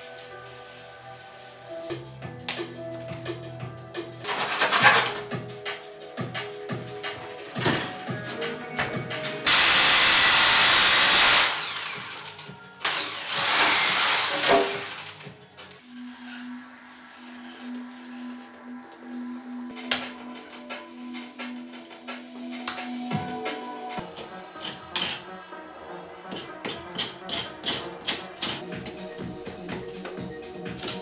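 Background music with steady notes. About ten seconds in, a loud, even rushing noise lasts about two seconds, followed by a shorter noisy stretch, with scattered clicks later on.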